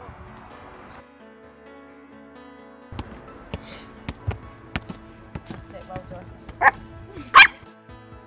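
Background music with steady sustained tones and scattered light taps, with a small dog barking twice near the end.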